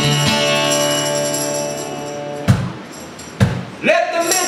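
Acoustic guitar chords ringing and slowly fading, then two sharp accents about a second apart with tambourine jingles, in a live acoustic duo's song.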